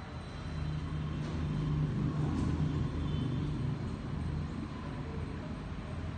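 A low rumble with a steady hum, swelling about a second in and then holding.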